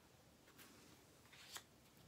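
Near silence with faint, brief rustles of handheld paper flashcards being swapped, twice.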